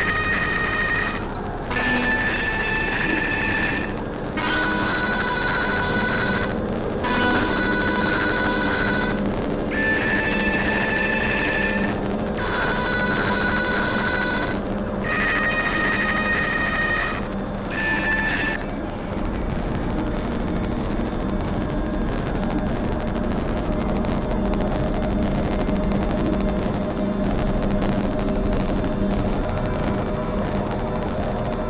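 Experimental synthesizer music: a series of sustained electronic tones, each about two seconds long with short breaks between them, stepping between two or three high pitches over a continuous drone. About two-thirds of the way through the tones stop and only the drone, grainier and noisier, carries on.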